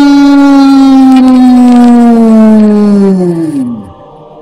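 A single long, loud held note on the soundtrack that sinks slowly in pitch and then slides steeply down and dies away just before the end.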